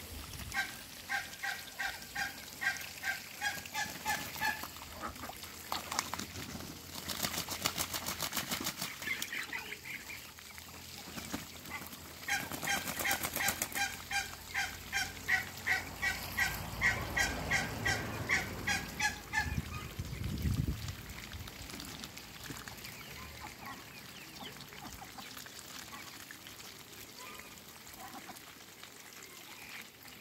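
Geese honking in two long runs of evenly repeated calls, about four a second, with a fast clicking rattle between the runs; quieter after the second run ends.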